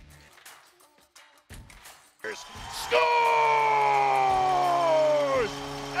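Play-by-play announcer shouting "Scores!" and holding the call, sliding slowly down in pitch, as an arena goal horn starts about three seconds in and sounds a steady low chord that carries on to the end. Before the call there are only a few faint clicks.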